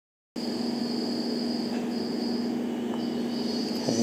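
Steady background hum with a thin, high-pitched whine running over it; the whine cuts out briefly a couple of times.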